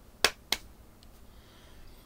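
Two sharp finger snaps in quick succession, a little over a quarter of a second apart.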